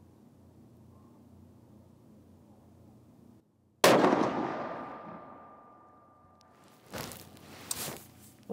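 A Sako S20 Hunter bolt-action rifle in .308 Win fires one shot about four seconds in. The report dies away in a long echo over two or three seconds. Near the end come two short, sharp metallic clicks from the bolt being worked.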